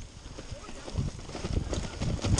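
Mountain bike rattling over a rough, leaf-covered dirt trail: tyre rumble with irregular knocks and thumps from the bike jolting, growing louder and more frequent about a second in.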